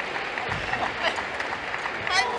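Spectators clapping in a sports hall after a point in a badminton match, with a dull thump about half a second in.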